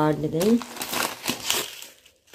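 Plastic packaging crinkling and rustling as a packet of cumin seeds is pulled out of a non-woven shopping bag, an irregular run of crackles that dies away near the end.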